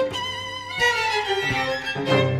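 String sextet of two violins, two violas and two cellos playing. High violin lines lead, gliding downward in pitch through the second half while the lower strings thin out beneath them.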